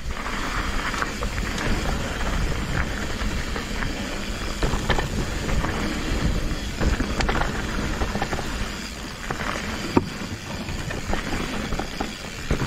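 Mountain bike riding over a dirt trail: tyre noise and scattered rattling clicks from the bike, with wind buffeting the microphone.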